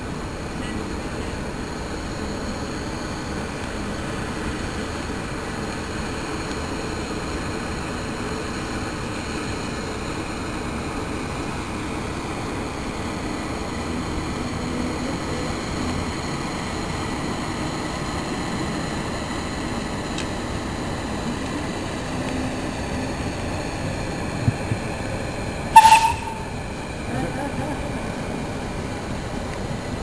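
Steam narrowboat's engine and boiler running steadily as the boat draws near. About 26 s in, a single short, very loud, sharp sound cuts through.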